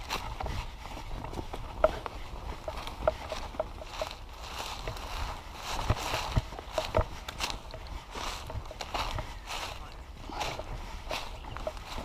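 Footsteps on a dirt bush track, with dry leaves and twigs crackling underfoot in many short, irregular clicks.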